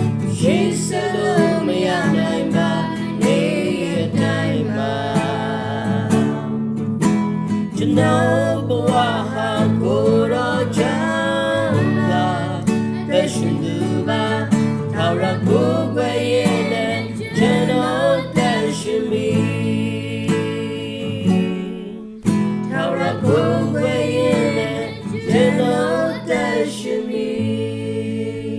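A man and a woman singing a song together to a strummed acoustic guitar, with a brief break in the singing near the end.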